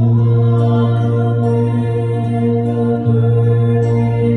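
Small mixed-voice church choir singing a slow hymn in long, sustained notes, a low note held steady and renewed about three seconds in.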